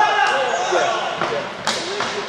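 Voices of players and spectators calling out in an echoing sports hall during an indoor hockey game, with a single sharp knock of play about one and a half seconds in.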